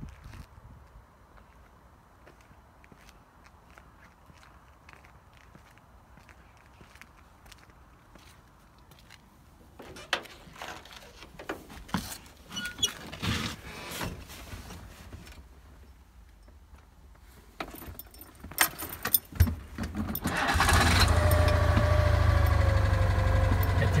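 Citroën 2CV's air-cooled flat-twin engine starting about twenty seconds in and then running steadily at idle, evenly, 'like a clock'. Before it come scattered knocks and clicks of the door and the ignition key.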